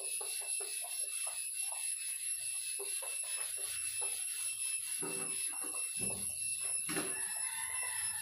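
Chalkboard duster wiping across a blackboard: quick repeated rubbing and scraping strokes, about four or five a second, over a faint steady high-pitched whine.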